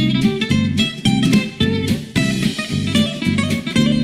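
Background music: an acoustic guitar playing a steady, repeating plucked and strummed pattern, about two chords a second.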